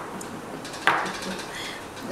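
An aerosol can of shaving cream set down on a wooden tabletop: one sharp knock about a second in, with a few faint clicks before it.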